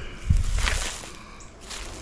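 A low thump about a third of a second in, followed by a short rustle and a few light clicks of handling noise.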